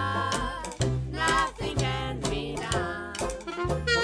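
Close female vocal harmony singing a swing tune over a small trad jazz band: a held chord ends about half a second in, followed by short phrases sung with vibrato, over a steady walking upright bass.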